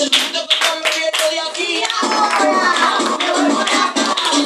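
Group hand clapping in a steady rhythm with voices singing along. About halfway through, the clapping gives way to music with singing.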